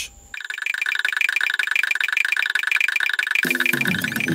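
A rapid, rattling two-pitch trill sound effect, about a dozen even pulses a second, lasting about three seconds. Near the end a plucked-guitar title-card jingle starts.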